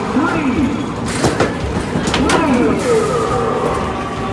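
Basketballs thudding against the backboard and rim of an NBA Hoops arcade basketball game, a couple of sharp knocks, over busy arcade noise of voices and gliding, falling tones.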